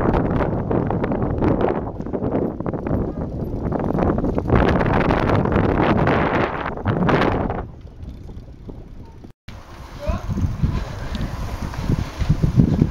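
Wind rushing over the microphone of a camera riding along on a moving bicycle, with children's voices mixed in. About seven and a half seconds in it drops away, and after a brief break a quieter stretch follows.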